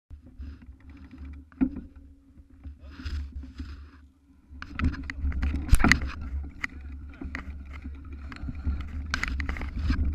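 Mountain bike riding over a rough dirt forest trail: a low rumble of wind on the microphone and tyres, with knocks and rattles from the bike over bumps. Quieter at first, it gets louder and busier from about four and a half seconds in as the bike picks up speed.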